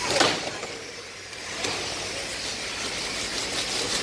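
Steady machinery noise of a factory floor, with a short handling noise just after the start and a fainter one a little later.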